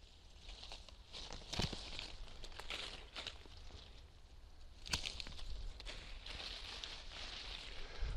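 Leaves and shoots of a young fruit tree rustling as they are handled during pruning, with two sharp clicks about one and a half and five seconds in from hand pruning shears cutting through shoots.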